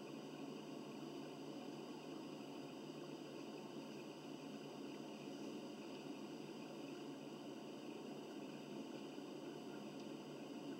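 Steady low background hiss of room tone, with no distinct footsteps or other events standing out.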